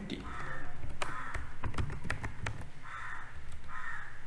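Sharp keyboard and mouse clicks as figures are entered in a spreadsheet. Behind them, a bird gives four harsh calls, each under half a second.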